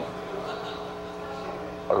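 A steady machine hum made of several held tones, with no rise or fall. A man's voice cuts in at the very end.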